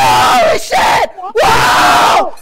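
A man yelling in shock, two long, loud, wordless shouts with a short break about a second in.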